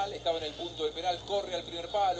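Speech throughout, quieter than the loud talk just before and after.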